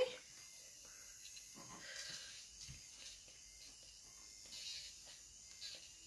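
Faint, uneven rubbing of an electric nail drill's soft pumice-type bit worked in small circles over the cuticle at slow speed.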